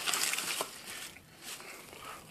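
Faint rustling and handling noise from U-joints in their plastic-bagged box being handled, with a light click or two, fading out after about a second.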